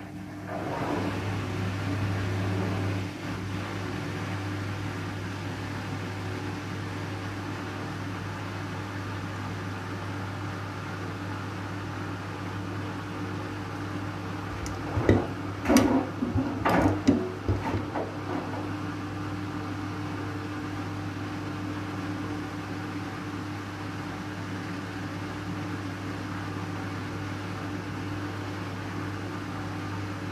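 Siemens front-loading washing machine turning its drum on a wool wash, the motor humming steadily from about a second in. About fifteen seconds in, a short run of knocks and clatter comes as the wet load tumbles over in the drum.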